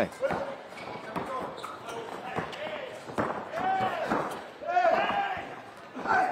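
Basketball bouncing and knocking on the court during live play, with short pitched calls from players' voices between the knocks.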